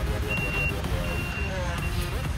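A vehicle's reversing alarm sounding a high, steady beep that repeats on and off about every three quarters of a second, three beeps in all, over a low rumble.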